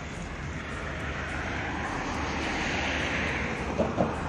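Steady outdoor rushing noise over a low hum, swelling about three seconds in and easing off, with a brief knock near the end.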